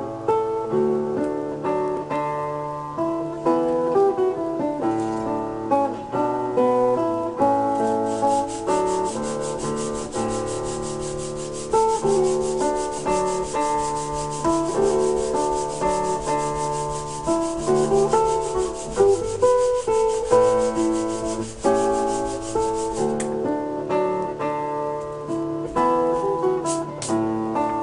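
Wooden kazoo body being hand-sanded in a vise: quick, even rasping strokes that start about eight seconds in and stop near the end, over acoustic guitar music.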